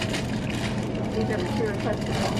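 Plastic produce bags of grapes crinkling and rustling as they are handled, over the steady hum of a grocery store, with faint voices in the background.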